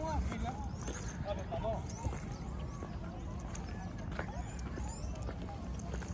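Faint, indistinct voices of people talking some way off, over a steady low rumble of wind on the microphone, with a few faint high chirps.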